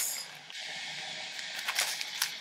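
Faint handling of a small cardboard box of teeth-whitening strips in the hands, with a few light clicks near the end, over steady room hiss.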